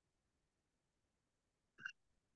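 Near silence, with one short, faint blip just before the end.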